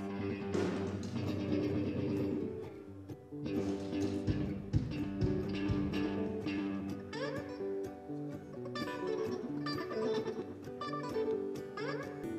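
Acoustic guitar played in strummed chords during a soundcheck.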